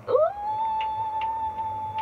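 A woman singing a long, high "ooh": her voice slides up, then holds one steady note.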